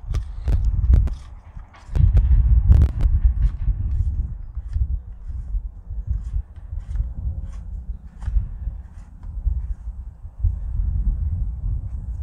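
Hand-tightening a battery chainsaw's side-cover knob to tension the chain: a few sharp clicks and knocks from the plastic and metal parts being handled. Under them runs a continuous low rumble on the microphone.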